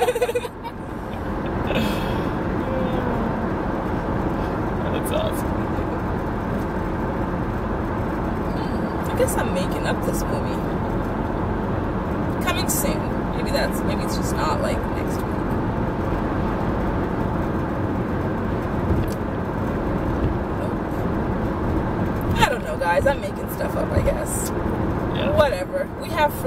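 Steady road and engine noise inside a moving car's cabin, with snatches of quiet talk.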